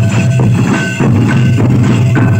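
Santhali folk drums, large tamak' kettle drums struck with sticks, beating a fast, steady dance rhythm of about three to four strokes a second, with short high notes sounding above the drumming.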